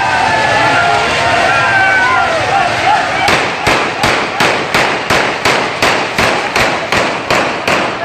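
Firecrackers going off in a fast, regular run of sharp bangs, about three a second and over a dozen in all, starting about three seconds in, among a shouting street crowd.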